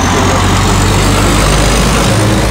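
Heavy dump truck driving past close by: loud, steady diesel engine noise with a deep low hum.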